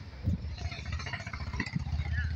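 A motor engine running with a steady low rumble.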